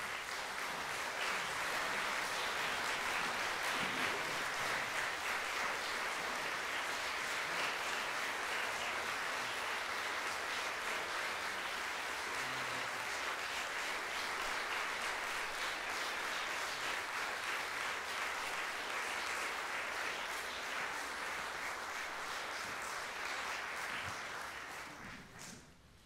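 Large audience applauding: steady, dense clapping that dies away near the end.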